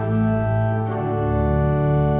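Organ playing slow sustained chords, the harmony moving to a new chord about a second in.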